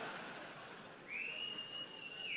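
A single whistled note that slides up at the start, holds steady for about a second, then drops at the end, over fading background noise.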